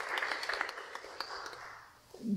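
Congregation applauding, the clapping thinning out and dying away near the end.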